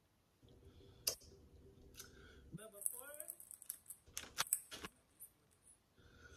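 Scattered sharp clicks and crinkles from a plastic chip bag and a glass jar being handled and moved on a table, with a short hummed vocal sound near the middle.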